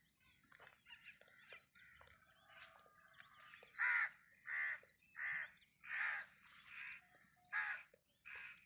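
Birds calling. Scattered small chirps are followed, from about halfway, by a loud call repeated about six times in quick, even succession.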